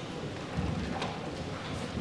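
Microphone handling noise: low rumbling and a few sharp knocks as a handheld microphone is set into the clip of a gooseneck stand and repositioned.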